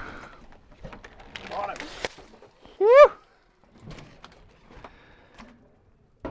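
A man's short, rising excited whoop about three seconds in, with a fainter voice before it. Around it are a few light knocks and thuds as the landing net holding a big snapper is lifted aboard and set down on the boat.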